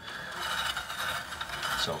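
Blade of a Burgess BBS-20 bandsaw being turned slowly by hand, running through the rear guide slot and just clearing the plastic guide rollers, making a steady light mechanical noise.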